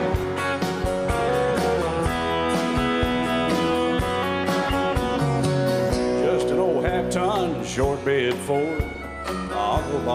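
Instrumental break of a country song: guitars over a steady drum beat, with a lead instrument playing sliding, bending notes in the second half.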